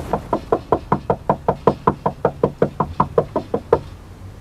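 Rapid, insistent knocking on a front door, about twenty knocks at roughly five a second, stopping shortly before the end.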